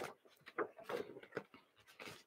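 Faint rustling of a paperback picture book's pages as it is handled and closed, a few short paper brushes about half a second to a second and a half in.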